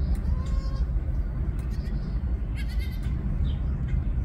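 Goat bleating: a short call about half a second in and a second, higher and wavering call near three seconds in, over a steady low rumble.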